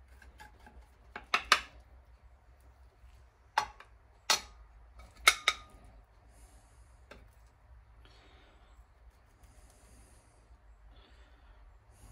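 Metal spoon clinking against a glass baking dish and a plate while cake is scooped out: about six sharp clinks in the first half, a couple of them ringing briefly, then only faint scraping.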